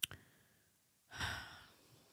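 A brief mouth click, then about a second in a soft sigh-like breath into a close microphone, swelling and fading within half a second.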